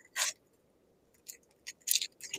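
Short scrapes and clicks of a trading card being handled in a plastic sleeve and top loader and set down on the playmat: one sharp scrape just after the start, then a quick cluster of several near the end.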